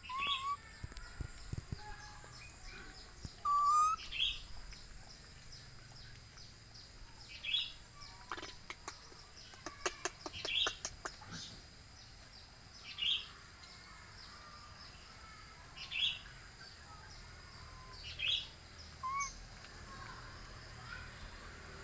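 A bird calling with short high chirps, repeated every two to three seconds, mixed with a few lower rising whistled notes. Near the middle comes a quick run of sharp clicks.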